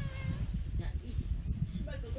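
A cat meowing: one short meow right at the start and a wavering one beginning near the end, over a steady low rumble.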